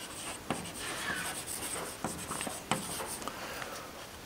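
Chalk writing on a blackboard: faint scratching strokes with a few sharper taps as a word is written.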